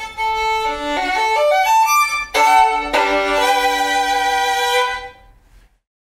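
Solo violin playing a quick rising run of notes, then a loud, sharply attacked note about two and a half seconds in, followed by held notes that die away shortly before the end.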